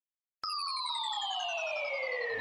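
An electronic tone starts abruptly with a click about half a second in and glides steadily down in pitch: the opening sweep of a pop song's intro.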